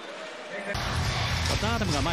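Live basketball arena sound cuts in abruptly about three-quarters of a second in: crowd noise with a deep rumble and a ball bouncing on the court. A voice comes in near the end.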